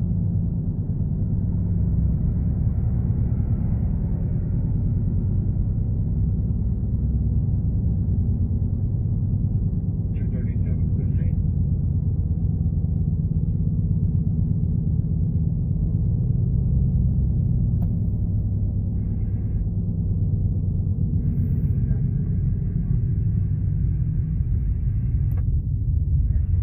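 Steady low rumble of road and engine noise inside a moving car's cabin, with short bursts of scanner radio noise about ten seconds in and again over the last several seconds.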